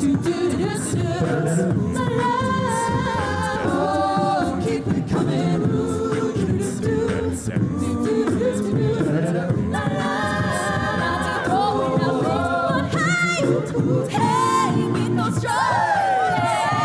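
An a cappella group singing a pop song through microphones, several voices in harmony with no instruments.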